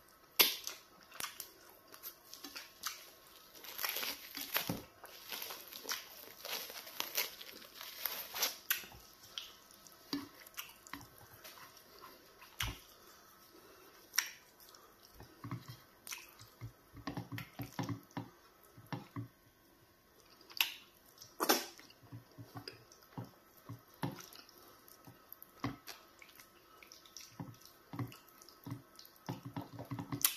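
Close-up wet eating sounds of egusi soup and pounded yam fufu eaten by hand: chewing, lip smacks and finger licking, with squelches from fingers working the fufu in the soup. The clicks come thick in the first ten seconds, then thin out to scattered smacks.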